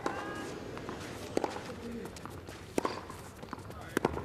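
Tennis rally on a clay court: a racket strikes the ball about every second and a half, four crisp hits in all.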